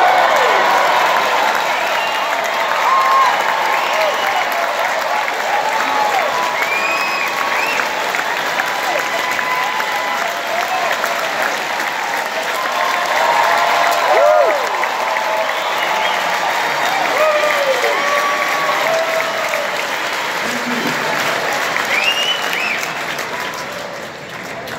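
Large theatre audience applauding, with scattered shouts and whistles, tapering off near the end.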